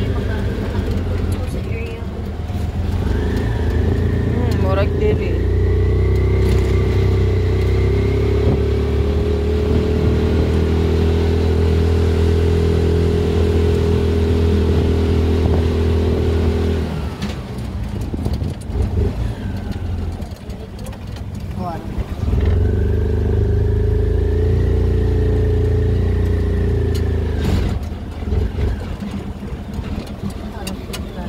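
Engine of a motor tricycle heard from inside its sidecar cab, picking up speed and then running steadily. It eases off about seventeen seconds in, picks up again about five seconds later, and eases off again near the end.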